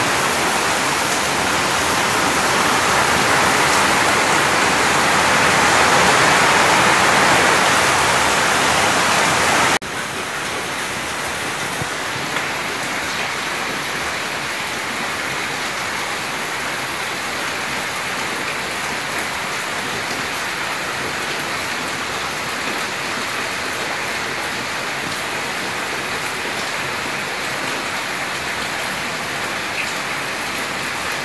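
A steady, even hiss like heavy rain, which drops suddenly in level about ten seconds in and then runs on evenly.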